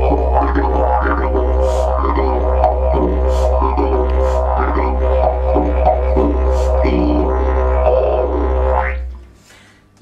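Didgeridoo played with a steady low drone under shifting, rhythmic overtone patterns; the playing stops about nine seconds in.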